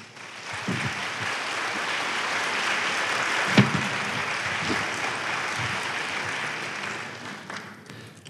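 Audience applauding, building up over the first second, holding steady and dying away near the end. A single sharp knock about three and a half seconds in.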